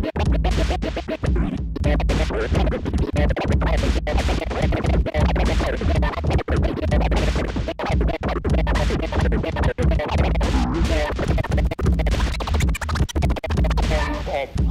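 Vinyl record scratched on a DJ turntable over a bass-heavy beat, the sound repeatedly cut off and back in.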